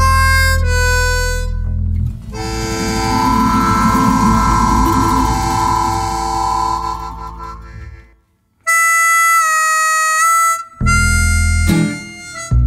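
Harmonica playing long, held notes and a wavering chord over bass, in a band recording, with a brief break about eight seconds in.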